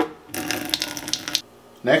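Cold water from a sink-side drinking-water faucet pouring into a plastic pitcher for about a second, after a short click at the start.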